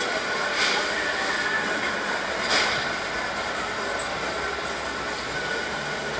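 Steady mechanical din of a funfair, with two short hissing bursts about half a second and two and a half seconds in.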